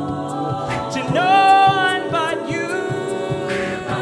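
A cappella vocal ensemble singing wordless sustained chords, with a lead voice sliding up into a held high note about a second in. Short, evenly spaced vocal-percussion hits keep a steady beat underneath.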